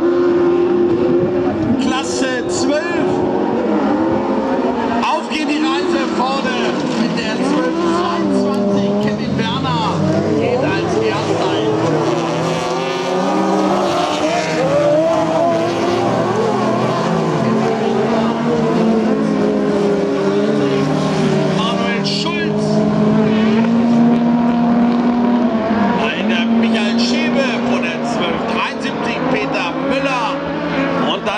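Several autocross race cars running flat out on a dirt track, their engines revving with many overlapping pitches that rise and fall as they accelerate and lift.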